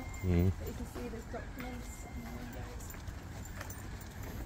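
Indistinct voices of people talking, with one brief louder voiced sound just after the start.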